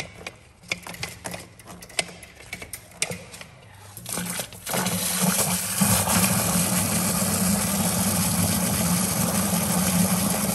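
Steel drain-snake cable clicking and knocking against a clogged floor drain as it is worked in by hand. About five seconds in, a power drain auger starts and runs steadily, spinning the cable in the drain while water rushes down it.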